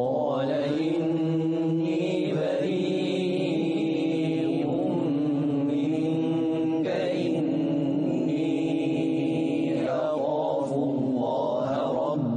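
A male voice chanting Quranic recitation in melodic style. It holds long, ornamented notes that turn in pitch, with a new phrase every few seconds.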